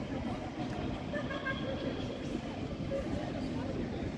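City street ambience: steady traffic rumble with distant voices of people nearby.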